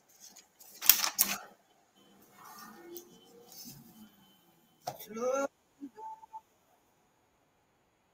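A few sharp clicks or knocks about a second in, then faint, muffled murmuring and a short voice-like sound about five seconds in, with dead silence between.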